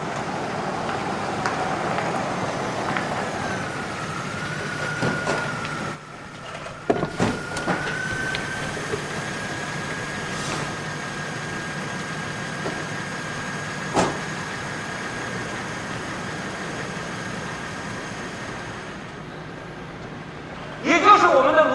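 A car pulling up and its engine running at idle, with a few knocks and a car door shutting with a clunk about fourteen seconds in.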